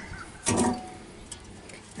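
A short scrape of metal about half a second in, then a faint click: the perforated steel heat deflector of an Oklahoma Joe Bronco drum smoker being set into place in the drum.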